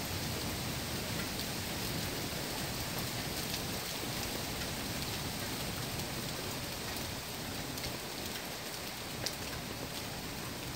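Heavy monsoon rain pouring down steadily, with one sharp tick about nine seconds in.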